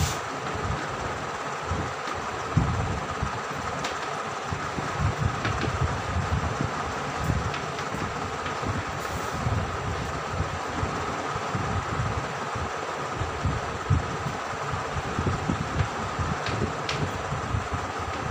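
Chalk writing on a blackboard, with faint ticks of the chalk at a few points, over a steady whirring background noise with a faint hum and an uneven low rumble.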